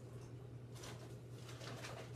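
Faint, soft puffs as a man draws on a tobacco pipe, twice, over a steady low hum.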